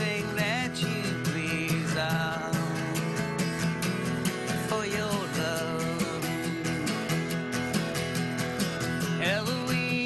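Live country-folk song: a man singing over steadily strummed guitar, his phrases sliding up into held notes.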